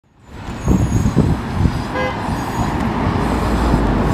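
NovaBus LFS Hybrid city bus running in street traffic, a low rumble that grows steadier as it comes closer. A brief horn toot about two seconds in.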